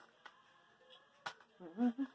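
Quiet room tone broken by a sharp click just past the middle, then a man's voice starts speaking near the end.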